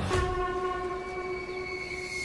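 A single steady horn-like tone, held at one pitch for about three seconds, starting just after the sound before it drops away.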